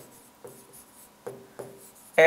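Stylus writing on an interactive board: faint pen strokes with about three light taps, each followed by a brief ring, as letters are written.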